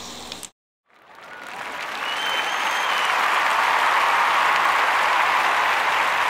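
Audience applause fading in after a brief cut to silence, rising over a couple of seconds and then holding steady, with a short whistle in the crowd early on the swell.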